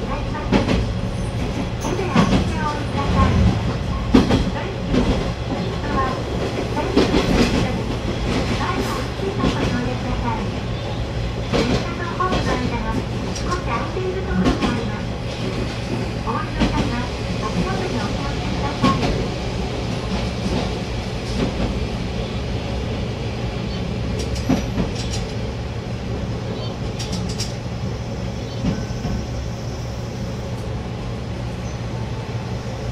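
KiHa 120 diesel railcar running along the line: a steady low engine drone with repeated clicks and knocks of the wheels over rail joints.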